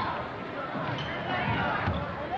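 A basketball bouncing on a gym floor, two thumps about a second apart, under the voices of a crowd and players.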